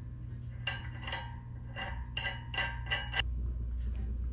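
Steel hex nut being spun by hand onto the threaded end of a disc harrow axle, against the axle washer: about six light metallic clinks over two and a half seconds.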